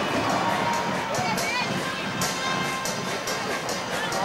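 Football stadium crowd noise: a steady din of many voices, with a few shouts and calls standing out above it.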